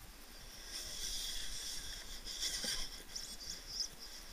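Electric motor and gearbox of a radio-controlled rock crawler whining as it climbs a boulder, with a brief knock midway and several short bursts of throttle near the end.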